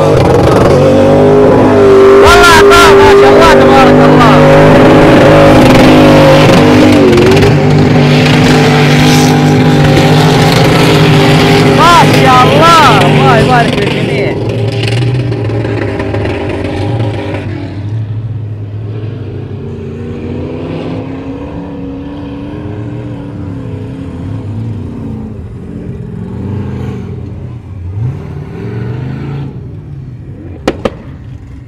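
Toyota 4x4's engine revving hard at high rpm as it climbs a sand dune, loud for roughly the first fourteen seconds. It then drops away to quieter engine sounds of vehicles driving on the sand.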